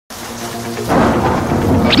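Thunderstorm sound effect, rumbling thunder and rain, swelling about a second in, with faint music tones underneath and a short rising sweep at the very end.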